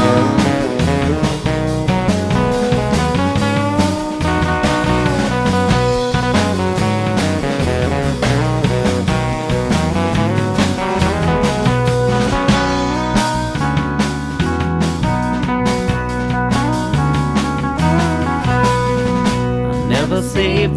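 An Americana roots-rock band plays an instrumental passage of a studio recording: guitars over bass and drums, with no singing.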